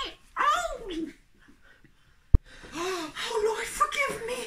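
A person's wordless vocal sounds: a drawn-out cry falling in pitch, then a pause broken by a single sharp click about two seconds in, then more vocalizing near the end.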